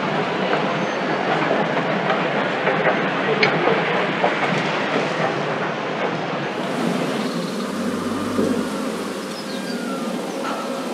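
A loud, steady mechanical rumble with scattered small clicks; its tone changes about seven seconds in.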